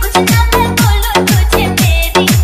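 Hindi DJ remix dance music with hard bass. A deep bass note falls in pitch on each beat, about two a second.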